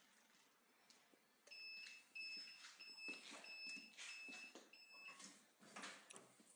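Heat press's digital controller buzzer sounding six steady, evenly spaced beeps, the signal that the pressing timer has run out. A short clatter follows near the end as the press is opened.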